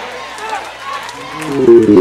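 Congregation members calling back faintly in response to the preacher, scattered voices over the room's reverberation. Near the end comes a loud held sound of several steady pitches, a sustained chord or shout, lasting about half a second.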